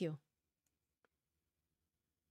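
A woman's voice finishing a word, then near silence broken by a single faint click about a second in.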